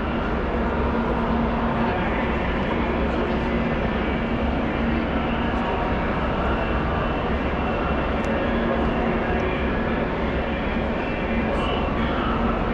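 Steady ambience of a busy car-show tent: a continuous low hum and rumble with indistinct crowd chatter behind it.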